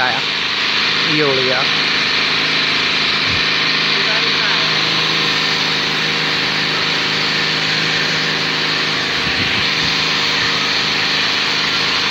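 A steady machine drone with a constant high hiss, unchanging throughout, with brief faint voices about a second in and around four seconds.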